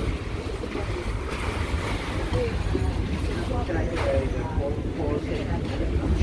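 Choppy lagoon water lapping against a waterfront terrace and moored gondolas, with wind noise on the microphone.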